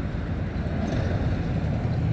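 Steady low rumble of outdoor background noise, with no distinct sound standing out.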